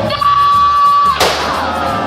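Wild West stunt-show sound: a long held high note over the show's music, cut off about a second in by a single sharp bang.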